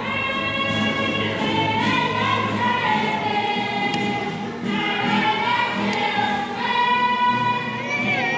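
Congregation singing a hymn together, many voices holding long notes that rise and fall slowly.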